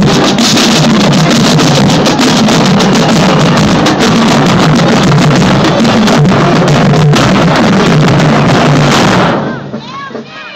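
A marching band with bass drums plays very loud at close range, the drums steady under dense low-pitched horn and drum sound. About nine seconds in the band stops abruptly, leaving crowd voices.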